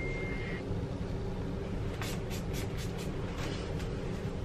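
A few short spritzes from a hair spray bottle, about two seconds in, over a steady low background rumble.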